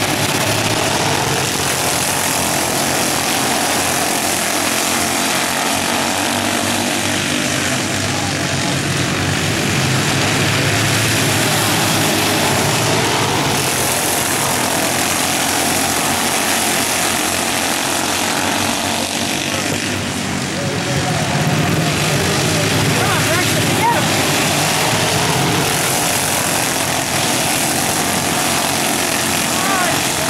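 A pack of minidwarf race cars lapping a dirt oval, their small engines droning together loudly, with engines revving up and down as the cars pass through the turns.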